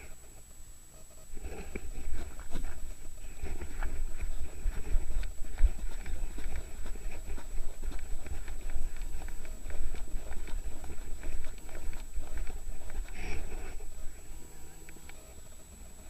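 Snowboard riding over chopped-up, tracked piste snow, heard through a body-worn action camera: a low rumble with irregular knocks and scrapes from the board. It builds about a second in and eases off near the end.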